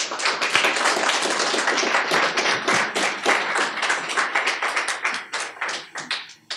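Audience applauding: many hands clapping densely, thinning to a few scattered claps near the end.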